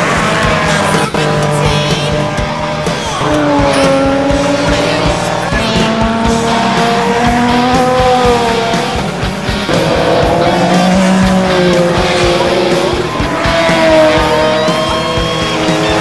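Race cars passing at speed, their engine notes rising and falling as they go through the corners, with background music mixed in.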